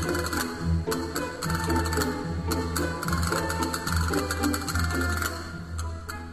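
Castanets played in rapid rattling rolls and sharp clicks over a full symphony orchestra, with strings and a steady bass underneath.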